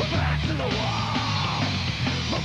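Heavy metal band playing: distorted guitars, bass and drums, with a yelled vocal across the middle.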